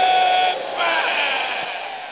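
A large congregation calling out together. A single held voice comes first, then many voices mingle and fade away steadily.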